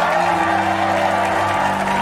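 Organ music from the wedding sketch playing in held chords, with a studio audience applauding and cheering underneath.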